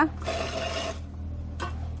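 Handling noise at a spring dial scale's steel bowl as a fruit is weighed: a soft rustle for about a second, then a single short click, over a steady low hum.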